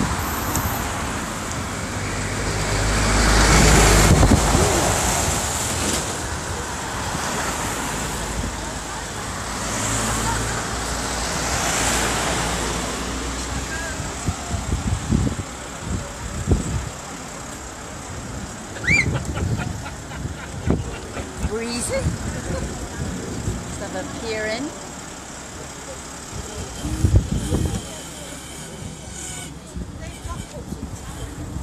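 Road traffic passing close by: vehicles swell up and fade away several times, the loudest about four seconds in, with others around ten and twelve seconds. Scattered knocks and faint voices in the second half.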